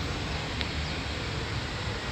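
Steady outdoor city-street ambience: an even hiss over a low traffic rumble, with no distinct events.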